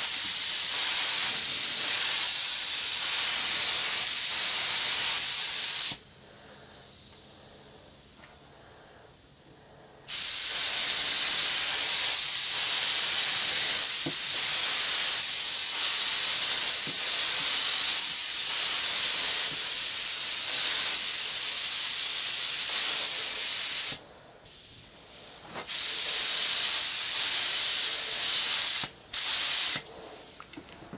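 Air spray gun hissing as it sprays candy paint, in long trigger pulls: a steady hiss for about six seconds, a pause of about four seconds, then a long run of about fourteen seconds, a short break, and two brief stops near the end.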